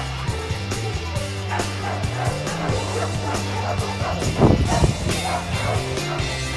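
A dog barking and yipping over background music with a steady bass line, the loudest outburst a little past the middle.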